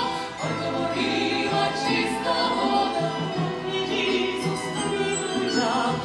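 A trio of women singing in harmony while accompanying themselves on banduras, the Ukrainian plucked string instrument.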